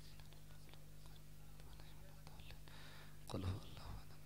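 Faint whispered recitation of prayers close to a microphone, over a steady low electrical hum. There is a brief louder low sound about three and a half seconds in.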